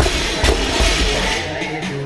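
A 155 lb barbell with bumper plates dropped onto a rubber gym floor, landing with a heavy thud and a second thump about half a second later, over hip-hop music with rapping.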